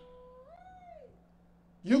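A faint, short high-pitched call that rises and falls once, like a meow, over a steady low electrical hum.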